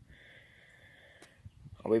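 Quiet background with a faint steady high-pitched drone; a man's voice starts near the end.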